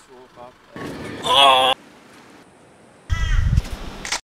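A crow cawing twice, two harsh, wavering calls about two seconds apart. The second call comes with a low rumble beneath it.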